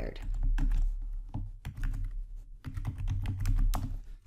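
Typing on a computer keyboard: a quick, uneven run of keystroke clicks as a short phrase is typed.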